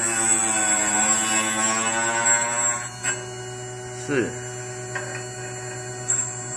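M312 end mill sharpener's motor running with a steady hum and whine while its wheel grinds the point of a three-flute end mill for about three seconds. A click follows as the grinding stops, and then only the motor hum is left.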